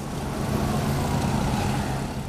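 Road traffic: motorcycles and other vehicles driving past, a steady engine hum over road noise.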